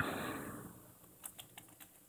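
Computer keyboard typing: about four short, quiet key clicks in the second half as a short word is typed.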